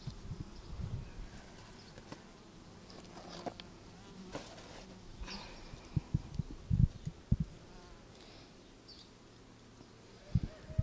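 Honeybees buzzing steadily around an opened mating nucleus. A few short low thumps come about six to seven and a half seconds in.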